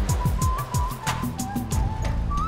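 Electronic segment-opening jingle of a TV news show: music with a high melodic line over a ticking beat and repeated falling low sweeps.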